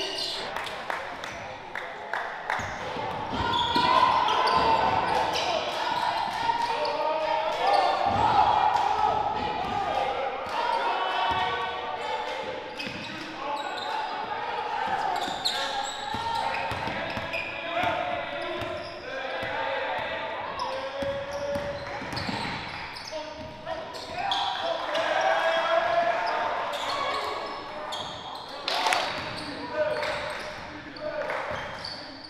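Live basketball game audio echoing in a gymnasium: players and coaches calling out over the ball bouncing on the hardwood court.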